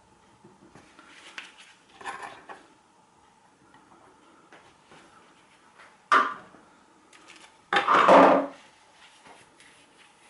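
Hard plastic parts of an electric shower being handled on a worktop as the outlet is pulled free and put down: small clicks and knocks, a sharp click about six seconds in, and the loudest sound, a short clatter about two seconds later.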